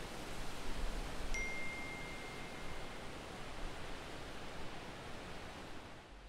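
A smartphone's message notification chime: a single clear ding about a second in that rings on and fades over a second and a half, over a steady hiss of background noise.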